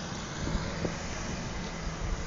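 Wind rushing over the microphone and a low rumble of riding along a paved street, with a faint steady hum underneath.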